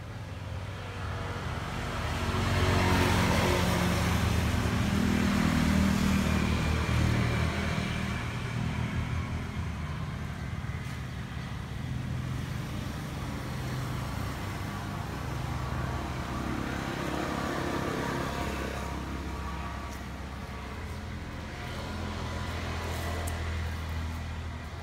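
An engine running nearby with a steady low hum, swelling loudest a couple of seconds in and easing back to a lower, steady level after about eight seconds.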